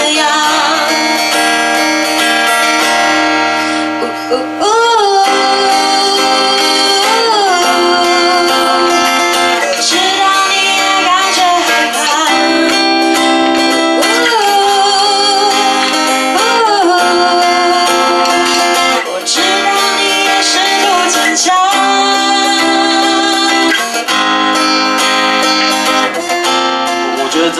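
A woman singing live while accompanying herself on an acoustic guitar, in phrases of long held notes with vibrato, broken by short pauses.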